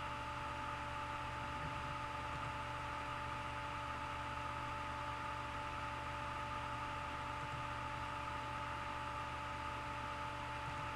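Steady background hum and hiss with a few thin, unchanging tones. Nothing starts or stops.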